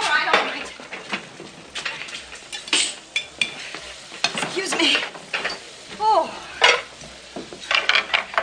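Kitchen clatter of plates, pots and cutlery knocking at irregular moments over the sizzle of frying on the stove. A few brief falling vocal sounds come through, the loudest about six seconds in.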